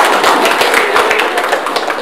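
A group of children clapping, a dense, uneven patter of many hand claps.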